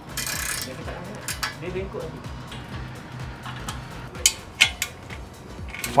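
Metal clinks and clicks from a steel wall-mounted pull-up bar and the tools fixing it, with a few sharp ones about four to five seconds in. Background music plays underneath.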